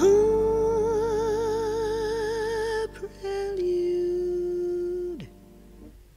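Female jazz vocalist holding a long sung note with a wide, even vibrato for about three seconds, over soft accompaniment. A lower, steadier note follows and slides down and away about five seconds in, leaving the music much quieter near the end.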